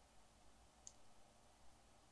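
Near silence: faint room tone with a single soft, high click just under a second in.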